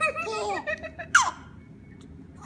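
Baby laughing: a run of short, wavering giggles in the first second, then a brief high squeal that slides sharply down in pitch, the loudest moment.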